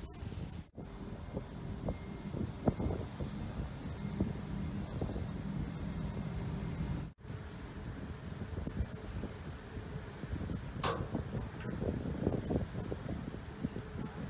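Wind buffeting the microphone at a ship's rail, over the rush of sea water along the hull and an anti-piracy water-spray nozzle discharging over the side under test. A steady low hum runs through the first half, and the sound drops out briefly about a second in and again halfway through.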